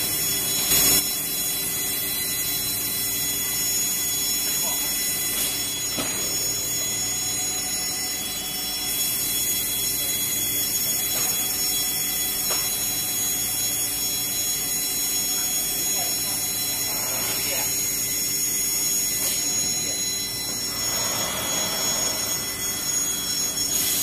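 Steady industrial machine noise from a multi-station vacuum thermoforming line: a constant high hiss with several steady hum and whine tones layered under it. A single sharp knock comes just under a second in.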